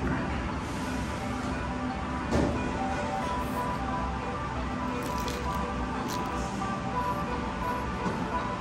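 Music playing steadily, with several held notes including a low drone. There is one brief knock about two and a half seconds in.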